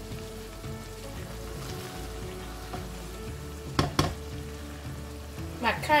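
Egg stew sizzling in a pan on the hob while a spatula stirs it, with two sharp knocks of the spatula against the pan about four seconds in.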